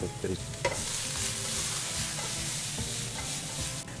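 Sliced vegetables sizzling in oil in a frying pan: a steady frying hiss that swells up about half a second in and holds.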